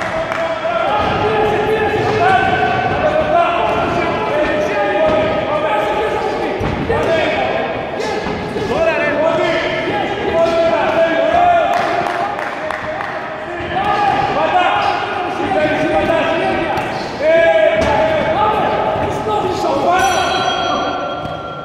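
Raised voices shouting almost without pause, echoing in a large hall during a kickboxing bout, with a few sharp thuds of kicks and punches landing.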